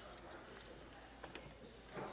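Very quiet room noise of a large chamber, with a few faint knocks or taps about a second and a half in.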